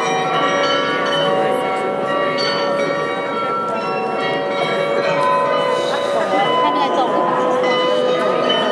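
The Munich New Town Hall Glockenspiel's bells playing a tune, many ringing notes struck one after another and overlapping as they ring on.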